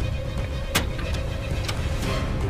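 Background music with a steady low drone, over which a metal door bolt is drawn back with a sharp click about three-quarters of a second in and a lighter click near the end.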